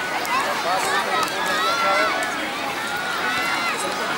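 Many people and children talking and calling out at once, a steady crowd babble with no single clear voice.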